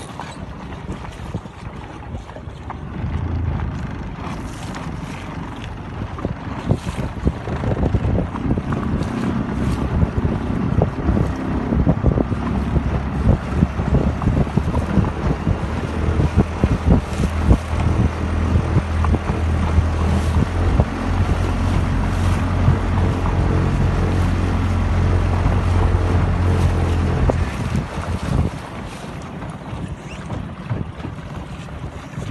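Small boat's motor running steadily, coming up about three seconds in and dropping away near the end, with gusts of wind buffeting the microphone.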